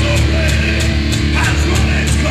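A hardcore punk band playing live and loud: distorted electric guitars, bass and drums, with cymbal hits coming several times a second.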